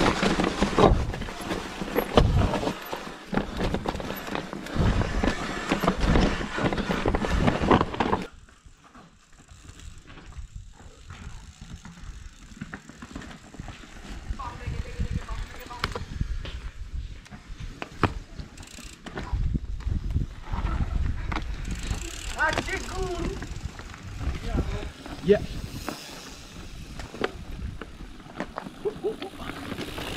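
Mountain bike riding down a rough dirt trail: wind on the handlebar camera's microphone and the bike rattling and knocking over rocks, cutting off suddenly about eight seconds in. After that, quieter bike rattles and people's voices.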